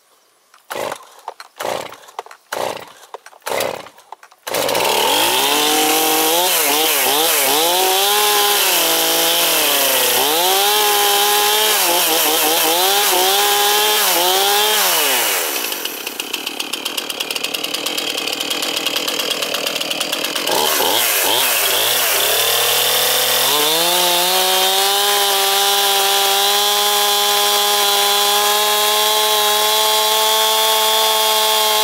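Stihl Farm Boss two-stroke chainsaw being pull-started: several quick pulls of the starter cord, then the engine catches about four seconds in. It is blipped up and down several times, settles to a lower idle for a few seconds, then is revved back up and held at high revs near the end.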